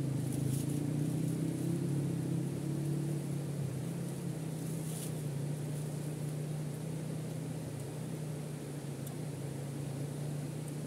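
Shallow river rapids rushing steadily, under a steady low drone.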